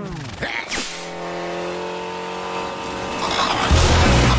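Cartoon soundtrack sound effects and score: a quick falling whistle-like glide, then a long held tone, then a loud low rumble that starts near the end.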